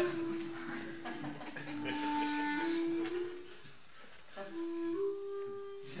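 Slow flute-like woodwind melody of long held notes, stepping down and then back up in pitch, with a short lull of about a second in the middle.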